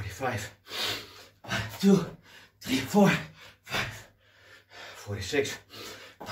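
A man's hard gasping breaths, roughly one a second, some of them voiced, from the exertion of a long unbroken set of six-count burpees.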